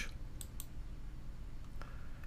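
A few faint computer mouse clicks, about half a second in and again near the end, over a low steady hum.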